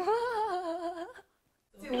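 A person's voice holding a drawn-out, slightly wavering hum for about a second, then cutting off abruptly to dead silence.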